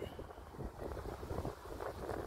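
Faint wind rumbling on the microphone, an uneven low buffeting with no distinct events.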